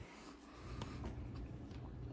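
Faint handling noise: light scratching and rustling with a couple of soft clicks, as a small vinyl figure and its cardboard packaging are handled.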